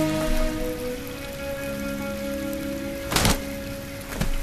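Film soundtrack music: slow, held chords over a steady hiss, with one short noisy whoosh a little after three seconds in.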